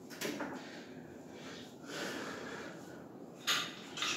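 Body movement on a tiled floor: scuffs, rustles and soft knocks as a person steps his feet down off a wooden chair from a plank and drops to his knees, with a sharper noise near the end.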